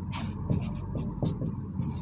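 A pen or stylus writing by hand on an interactive whiteboard screen: a quick run of short scratchy strokes as a word is written out.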